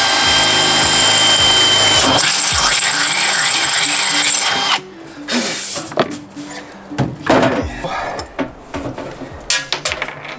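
Cordless drill running steadily with a whine as it bores a hole through black single-wall steel stovepipe, stopping abruptly about five seconds in. A few light knocks and handling clatter follow.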